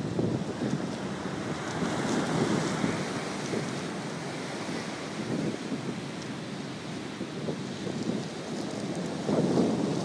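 Strong wind buffeting the microphone in uneven gusts, over the steady wash of surf on the beach.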